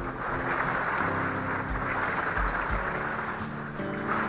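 Heavy rain pounding on a motorhome's roof in a wind storm: a steady, even hiss. Music with held notes plays over it.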